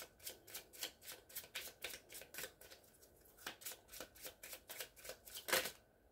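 A deck of crystal oracle cards being shuffled by hand: a quick, faint run of card strokes about four a second, with a short lull about three seconds in and a couple of louder strokes near the end.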